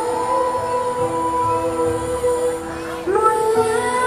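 A woman singing a slow pop ballad into a microphone over backing music, holding one long note and then stepping up to a higher phrase about three seconds in.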